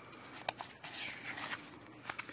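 A painted paper page of an art journal being turned by hand: a sharp tick about half a second in, then a soft paper rustle around the middle and a faint tick near the end.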